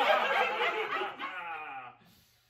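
Several people laughing together; over the last second one voice slides down in pitch, and the sound then cuts off suddenly.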